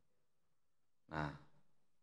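Near silence, then a man says one short word through a microphone about a second in.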